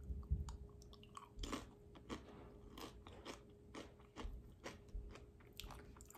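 A person chewing a mouthful of crunchy chip with mashed avocado: a run of faint, irregular crunches.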